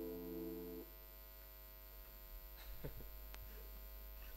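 The held last note of a chanted refrain stops short just under a second in. After it comes a quiet pause with a low electrical hum, a few faint stirrings and a single sharp click.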